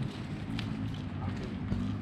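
Footsteps of several people walking on a dirt road shoulder, a quick irregular crunching patter, over a steady low hum.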